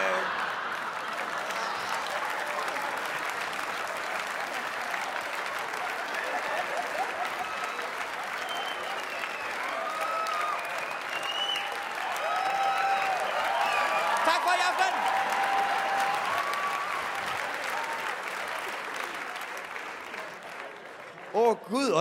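A theatre audience applauding at length, with individual voices laughing and calling out over the clapping midway through. It eases off near the end.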